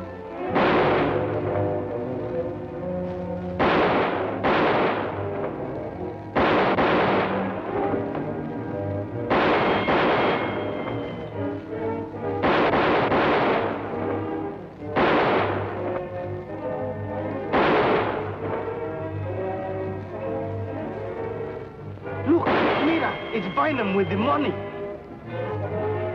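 A gunfight: about ten gunshots at uneven gaps of one to three seconds, each with a long echoing tail, over dramatic background music.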